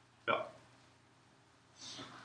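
A single short spoken "yeah", then quiet room tone, with a brief soft hiss near the end.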